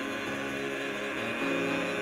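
Mixed church choir of men's and women's voices singing held, sustained chords.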